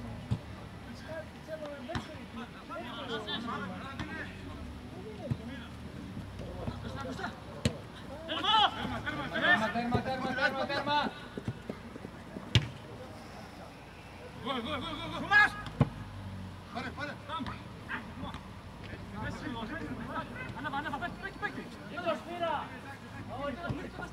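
Footballers' shouts and calls carrying across an open pitch during play, loudest about nine to eleven seconds in, with several sharp thumps of the ball being kicked.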